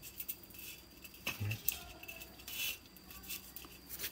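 Shade netting being handled and pressed into an aluminium lock channel: faint rustling with scattered light metallic clicks and scrapes.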